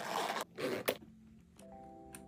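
Gold metal zipper on a brown textured makeup case being unzipped in two quick strokes within the first second, the second ending in a sharp click. Soft background music comes in after.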